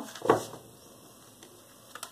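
Large tarot cards being shuffled by hand: one short snap of cards about a third of a second in, then quiet handling of the deck with a faint tap near the end.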